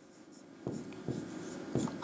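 Stylus pen writing on an interactive board's screen: faint scratchy strokes with a few light taps, starting a little over half a second in.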